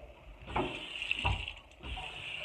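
Water running from a tap into a sink, starting about half a second in, with a short break near the end before it runs again.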